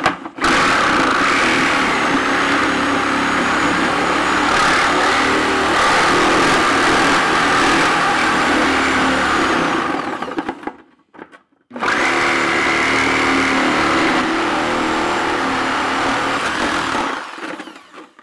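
Reciprocating saw cutting through the thin plastic wall of a large water jar. It runs steadily for about ten seconds, stops for a second or so, then cuts again until shortly before the end.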